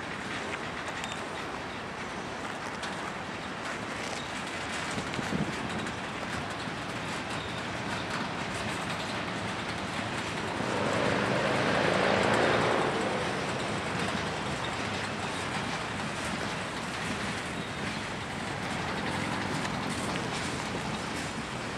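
Freight train cars rolling past: a steady rumble and rattle of wheels on rail that swells louder for a few seconds midway.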